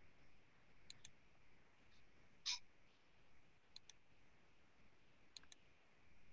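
Near silence with faint computer mouse clicks: three quick double clicks and one louder single click about halfway through.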